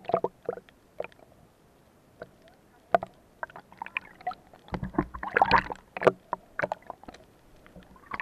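Underwater sound picked up by a camera held below the sea surface: scattered sharp clicks and knocks, with a louder stretch of churning water and deep rumble around five to six seconds in.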